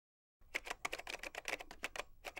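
Computer keyboard typing in quick keystrokes, starting about half a second in after silence.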